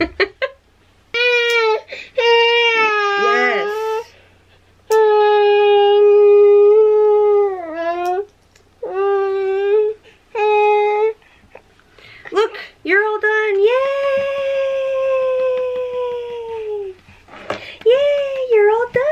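A baby crying in a string of long, steady wails with short breaks between them, protesting at having her fingernails clipped. The last and longest wail, near the end, lasts about three seconds and slowly sinks in pitch.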